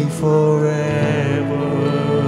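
Live worship music: sustained keyboard chords under a long, held sung note with vibrato.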